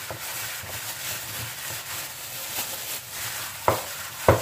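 Plastic food glove crinkling and rustling as a hand squeezes and mixes grated taro with mashed banana in a stainless steel bowl, with one sharp knock near the end.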